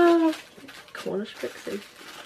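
A woman laughing softly: a short, loud high note falling in pitch at the very start, then a few brief quiet chuckles.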